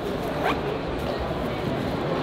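A zipper on a Gregory Targhee Fasttrack ski backpack being worked, with fabric handling of the pack.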